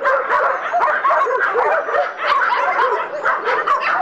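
Many shelter dogs in wire-mesh pens barking and yelping at once, a dense, continuous chorus of overlapping calls.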